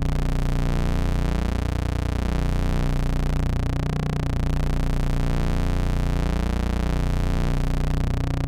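Rossum Trident complex oscillator in a Eurorack modular synthesizer sounding a steady, low drone with a big sub, its pulse output mixed back into the waveform through a Klavis Mixwitch. The timbre sweeps up and down in slow waves about every two seconds.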